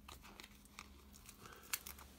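Faint crinkling and light ticking as small foam pads are peeled off a sheet of mini dimensionals, with a couple of sharper clicks near the end.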